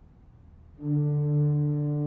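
Pipe organ: after a quiet start, a loud sustained chord enters just under a second in and holds steady.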